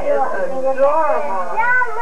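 A few short, high-pitched vocal calls that rise and fall in pitch, ending with a higher, longer arching call near the end.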